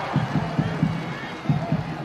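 Faint stadium ambience from a football match broadcast: a low murmur of a sparse crowd with distant voices from the pitch.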